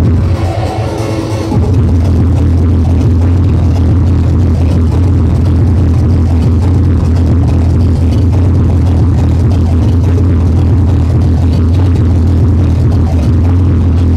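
Hardcore techno DJ set playing very loud over a club sound system, dominated by a heavy bass kick. In the first second and a half the bass drops out under a higher melodic layer, then the full beat comes back in.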